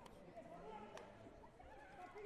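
Faint voices talking in a large, echoing hall, with one sharp slap about a second in.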